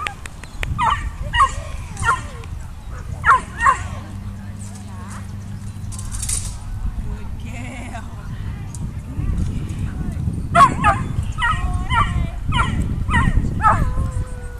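A puppy yipping and barking in play during tug-of-war, in short high calls: a few in the first seconds, then a quick run of them near the end.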